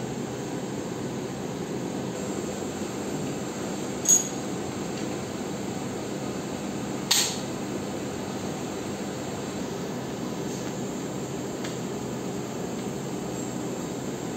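Steady room hum, broken by two short metallic clinks of steel biopsy instruments about four and seven seconds in, the first with a brief high ring.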